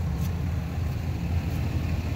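2022 Ram 2500 pickup's engine idling: a low, steady rumble.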